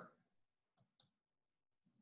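Two faint computer mouse clicks in quick succession, about a fifth of a second apart, as a menu tab is clicked; otherwise near silence.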